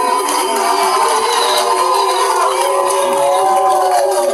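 Live singing over music through a PA: voices holding long notes that slide in pitch, with crowd noise underneath.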